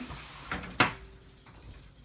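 Two short knocks, a faint one about half a second in and a sharper, louder one just under a second in, then a quiet stretch.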